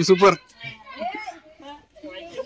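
Several people's voices talking, one loud high voice in the first half-second and then quieter chatter.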